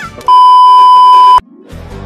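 A single loud, steady, high-pitched electronic beep lasting about a second, cutting off sharply: a censor-bleep tone used as a meme sound effect. Music comes back in near the end.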